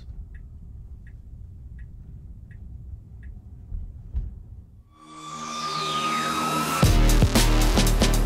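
Low road rumble inside the car's cabin with a faint tick about every three-quarters of a second. About five seconds in, a whooshing sound effect with a falling sweep swells up, and an outro music track with a heavy beat comes in loud near the end.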